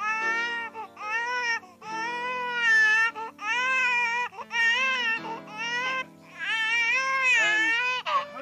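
An infant crying in repeated wailing cries, about seven in a row, over sustained low background music chords.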